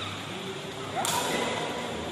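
A takraw ball struck once by a player about a second in: a sharp crack, followed by a brief rising squeak.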